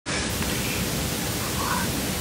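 Steady hiss of background noise, even and unbroken.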